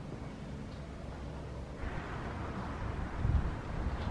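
Wind buffeting the microphone: a steady low rumble that grows gustier about halfway through.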